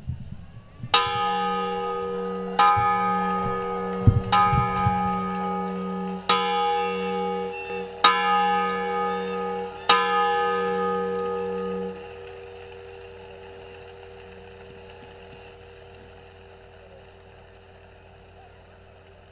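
A large bronze ceremonial bell, rung by its rope, is struck six times at steady intervals of about two seconds, each strike ringing on into the next. After the last strike the ringing dies slowly away.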